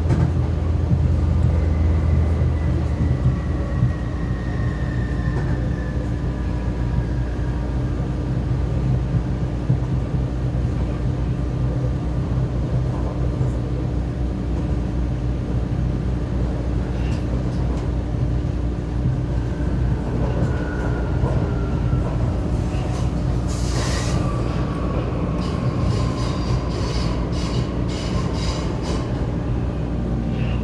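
Vienna U-Bahn U4 train running, heard from inside the car: a steady low rumble and hum, with a whine that slowly falls in pitch twice. Near the end there is a short hiss, then a run of clicks from the wheels and track.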